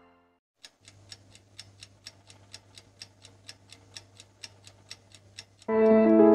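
A clock ticking steadily, about four ticks a second, over a faint low hum; the ticking stops as piano music comes in near the end.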